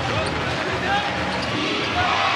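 Basketball arena crowd noise during live play, with a basketball being dribbled on the hardwood court.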